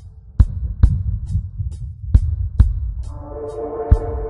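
Instrumental roots reggae dub: a deep, heavy bassline with sharp drum hits and regular high cymbal ticks, and a sustained keyboard chord coming in about three seconds in.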